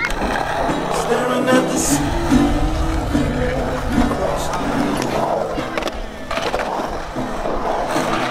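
Skateboard wheels rolling on a concrete bowl, a steady low rumble, under background music with singing.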